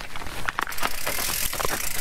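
Scott Spark full-suspension cross-country mountain bike rattling down a rocky trail. The tyres crunch over gravel and loose stones, and the frame and chain clatter in a quick run of sharp knocks.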